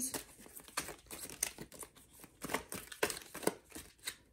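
Small white paper slips rustling and crinkling as they are leafed through and sorted by hand, a string of irregular short crackles.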